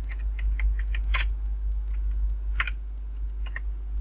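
Typing on a computer keyboard: a quick run of key clicks for about a second and a half, then a few scattered keystrokes, two of them louder. A steady low hum runs underneath.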